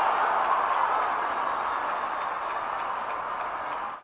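Ballpark crowd cheering after a big swing at the plate, a steady noise that slowly fades.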